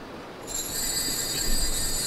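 Altar bells ringing at the elevation of the host, the consecration bell of the Mass: several high, steady ringing tones that start about half a second in and keep sounding.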